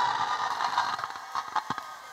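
A live calypso band's last chord dying away at the end of the song, with a couple of faint clicks in the second half.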